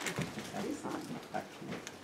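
Indistinct voices and footsteps of people moving about a small room, with a few short knocks.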